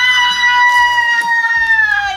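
A woman's high, drawn-out excited squeal, held for about two seconds and dropping in pitch at the end, over faint background music with a beat.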